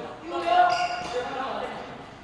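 A person's voice calling out one drawn-out syllable, held for about a second.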